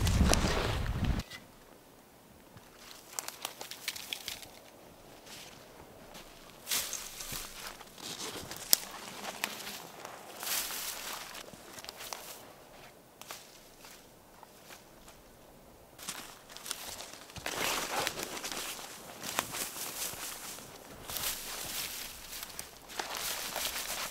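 Footsteps crunching in snow and the rustle of pine boughs being dragged and piled, coming in scattered bursts that grow busier in the second half. A short low rumble comes in the first second.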